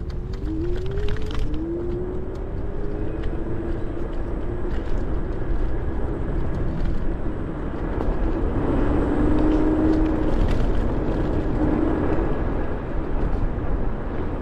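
Ninebot G30P electric kick scooter riding along a paved path: steady tyre rumble and wind on the microphone, with the electric motor's whine rising in pitch near the start as it speeds up, then holding steady and growing louder in the second half.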